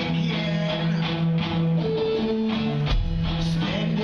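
Live rock band playing a song: electric guitar, bass guitar and drums in a loud, steady amplified mix.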